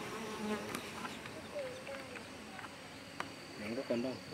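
Honeybees buzzing faintly around a wooden hive entrance, with single bees' flight tones wavering up and down in pitch as they fly past.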